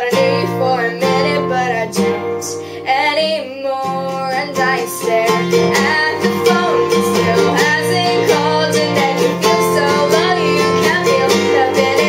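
A woman singing solo, accompanying herself on a strummed nylon-string acoustic guitar.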